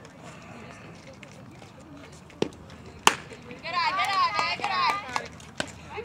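A sharp crack of a pitched softball at home plate about three seconds in, with a fainter knock just before it. High-pitched girls' voices then shout for about a second and a half.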